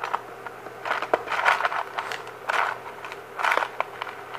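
Small tools and parts being rummaged through on a workbench while a lost needle is searched for: scraping and rustling in three short bursts, with one sharp click about a second in.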